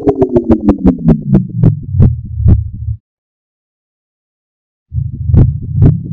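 Digitally pitch-shifted, slowed and reversed Pepsi logo sound effect: a fast stutter of pulses whose pitch glides down and slows. It cuts off suddenly about halfway and comes back nearly two seconds later, now gliding upward.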